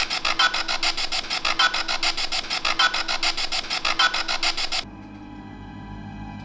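Handheld spirit box sweeping through radio stations: a loud, rapid chopping of static at about ten pulses a second. It cuts off suddenly near the end, leaving a low, steady drone of eerie background music.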